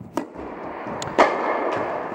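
Tennis racket striking the ball on a serve, then a louder sharp crack about a second later, each hit ringing on in the echo of the indoor tennis hall.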